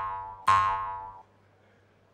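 Two twangy boing notes about three-quarters of a second apart, each struck and ringing away within about a second; by about a second and a quarter in, only a faint low hum remains.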